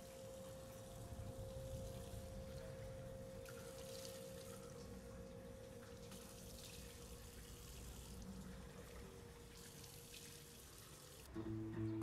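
Tap water running steadily into a bathroom sink as long hair is rinsed under it, faint, with a thin steady tone underneath. Near the end it gives way to acoustic guitar strumming.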